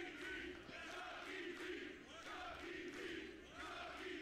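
Faint arena crowd chanting from a wrestling match's broadcast audio, many voices rising and falling in repeated swells about once a second.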